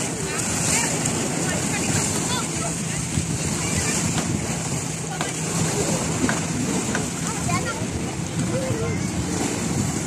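Wind buffeting the microphone over the steady wash of waves on a shore, with faint voices now and then.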